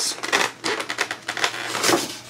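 Styrofoam lid of a fish-shipping box rubbing and squeaking against the foam box as it is worked loose and lifted off, a run of short crackling scrapes.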